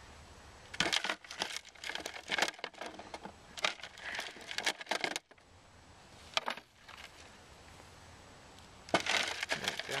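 Homemade soil sifter, a plastic container with a wire-mesh bottom, shaken in repeated short bursts, dirt and small stones rattling and pattering through the mesh onto the ground. Bursts run from about a second in to about five seconds, come once more briefly, and again near the end.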